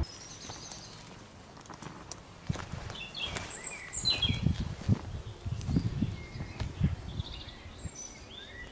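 Small birds chirping in short, scattered calls over a low, uneven outdoor rumble.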